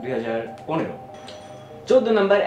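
A man speaking over faint background music. In the quieter stretch after about a second and a half, a short, high, bell-like chime rings.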